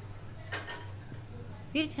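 A single short knock about half a second in, like kitchenware being handled, over a steady low hum.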